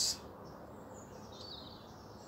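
Faint bird chirps, a few short high calls about a second in, over a steady outdoor background hush.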